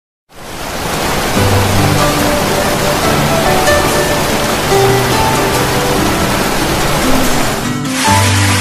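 Steady rush of a waterfall with instrumental music playing over it, held notes coming and going.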